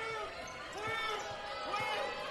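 Live basketball arena sound between commentary lines: a ball being dribbled on the hardwood court, faint voices calling out and a low crowd murmur.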